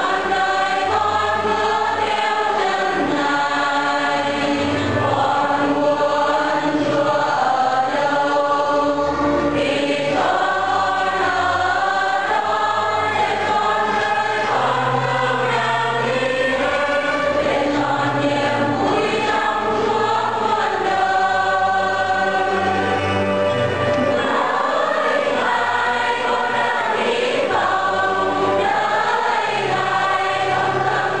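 Choir singing a hymn, with sustained notes that change pitch every second or so.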